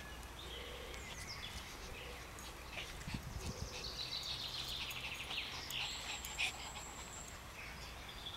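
Small dogs playing on sand: paws scuffling and bodies bumping, with a few soft thumps about three seconds in. Faint high chirps run through the middle.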